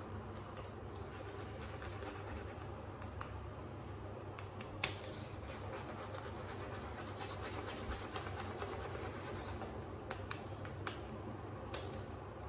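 Zebra 28mm synthetic shaving brush working wet lather over the face: faint swishing of bristles against stubble with scattered small clicks, one sharper click about five seconds in.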